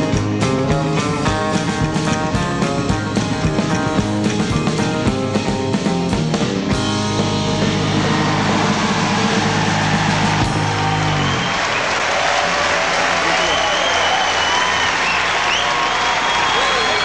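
Live country band with acoustic guitar and upright bass playing the last bars of a song, ending on a held final chord that fades out about eleven seconds in. Audience applause and cheering swells from about eight seconds in and carries on after the music stops.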